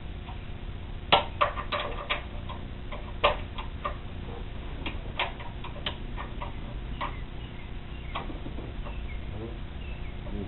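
Metal hand tools and bolts clinking and tapping in a car's engine bay: a run of sharp, irregular clicks, thickest in the first few seconds and thinning out after.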